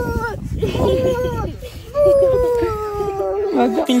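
A high-pitched voice whining in long, drawn-out wails, each sliding slowly down in pitch: one trails off just after the start, a short one follows about a second in, and the longest runs from about two seconds in.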